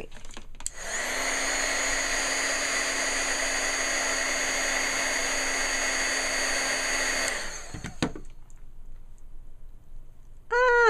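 Craft embossing heat gun switched on about a second in. Its fan runs steadily with a hum that rises as it spins up, then it is switched off about seven seconds in and winds down. A sharp click follows.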